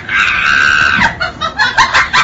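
A high-pitched scream held for about a second, followed by a quick run of short rhythmic beats.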